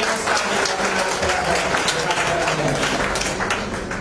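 Audience applauding: dense clapping that tapers off near the end.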